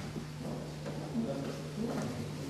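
Light knocks of a wooden honey frame against the metal frame rest of an uncapping tray as the frame is turned over and set back down, over a steady low hum and a faint murmur of voices.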